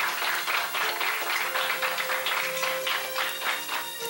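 A group of children clapping their hands in quick, uneven claps over a background music bed with held notes.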